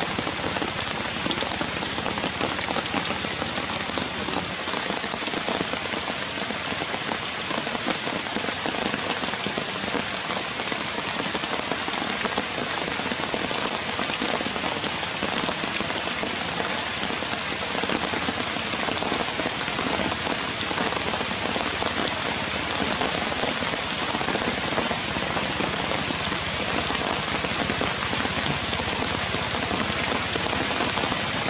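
Heavy rain falling steadily, a dense, even patter of drops that keeps up without a break.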